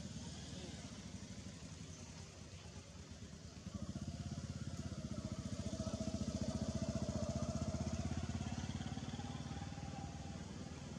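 A small motor vehicle's engine passing by: a low, even engine pulse that swells from about four seconds in, is loudest a few seconds later, and then fades a little.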